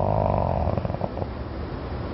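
A man's drawn-out, creaky 'uhh' of hesitation, trailing off after about a second into a faint rattle.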